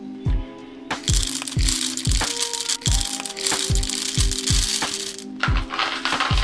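Background music with a steady drum beat over a hand coffee grinder crunching beans; the grinding rasp starts about a second in and continues, with a brief break near the end.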